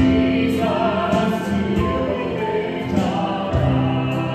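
Gospel-style music with a choir singing over sustained instrumental notes.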